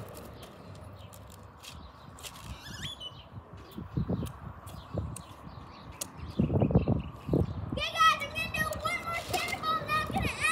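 A child's high voice calling out, drawn-out and wavering, from about eight seconds in. A few dull low thumps come a few seconds before it.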